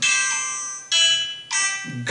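Instrumental backing music with no singing: three chords struck at the start, about a second in and again half a second later, each ringing on and fading.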